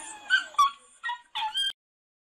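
A dog whimpering and yelping in a few short, high cries, the sound of a dog trapped in icy water. The sound cuts off abruptly near the end.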